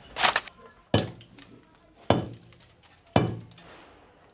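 Four hammer blows about a second apart, striking and breaking ceramic tile and masonry, each with a brief clinking ring of shattering pieces.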